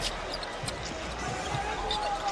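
Basketball being dribbled on a hardwood court, a few thuds heard over steady arena crowd noise.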